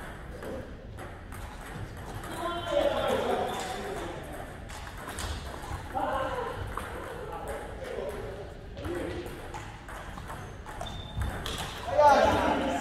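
Table tennis rally: the ball clicks off the bats and the table again and again, with more ball clicks from other tables in the hall. Voices talk at intervals and are the loudest thing, about three seconds in and again around six seconds.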